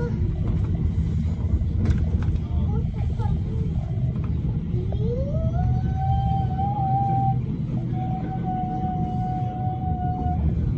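Stockholm metro train running, with a steady low rumble of wheels on the track. About halfway through, an electric motor whine rises in pitch as the train picks up speed, then holds one steady tone.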